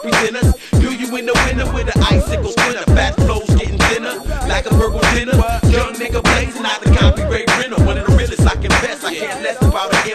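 Hip hop track: a rapper delivering a verse over a beat, with deep bass hits that slide down in pitch every half second or so.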